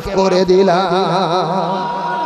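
A man's voice singing a drawn-out melodic phrase with a strong, even vibrato through a microphone and loudspeakers: the sung chant of a Bangla waz sermon.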